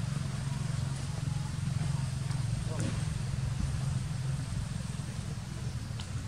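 A steady low hum, with a faint click about three seconds in.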